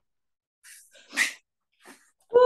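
A dog making one short, breathy sound about a second in, with fainter noise just before it.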